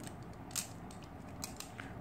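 Faint clicks and light rattling of plastic Beyblade top parts being handled and fitted together.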